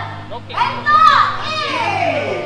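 High-pitched voice calls whose pitch swoops up and down, with one long falling glide starting about a second in, over a steady low hum.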